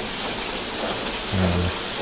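Water falling from spillway outlets into a koi pond, a steady splashing.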